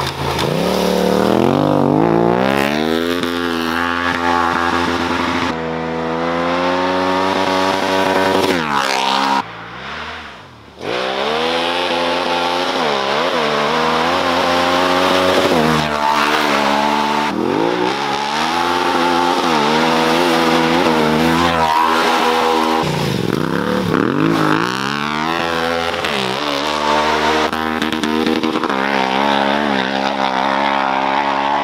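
Yamaha Ténéré 700's parallel-twin engine revving hard under acceleration, its pitch climbing through each gear and dropping at every shift, over several passes. It goes briefly quieter about ten seconds in, then picks up again.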